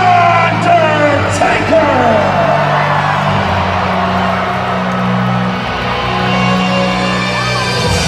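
Wrestling entrance music played loud over the arena PA, a slow theme with steady low droning tones, heard under a crowd that is cheering and yelling. Several drawn-out whoops rise and fall in the first two seconds, and the crowd noise settles somewhat after that.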